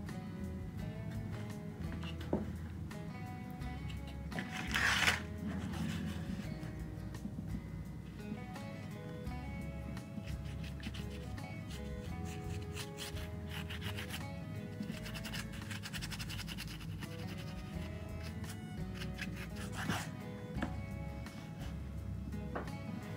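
Instrumental background music, with a paintbrush dry-brushing paint onto a hardback book cover rubbing and scratching under it. The brush noise is loudest briefly about five seconds in.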